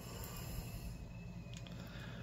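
Faint handling of a small plastic camera's screen and circuit-board assembly in the fingers, with a few light clicks over a steady low hum.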